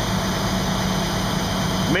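Fire engine's engine running steadily at about 1000 rpm, driving its 1500 gallon-per-minute pump, with the steady air rush of the Trident automatic air primer. The primer is still pulling water up the suction hose against a 16-foot lift, and the pump is not yet primed.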